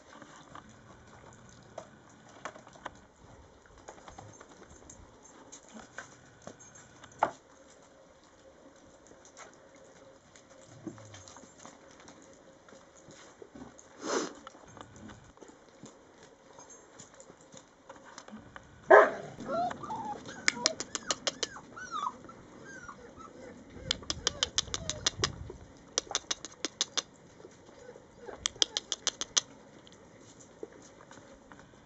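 Rhodesian ridgeback puppies playing together: scattered clicks and scrabbling of paws, then a sudden sharp yelp about two-thirds of the way through, followed by a few short high whines and yips. Quick runs of clicking come several times near the end.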